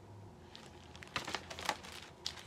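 Clear plastic outer sleeve of a vinyl LP crinkling as the record is handled. Quiet at first, then a run of short rustles starting about a second in.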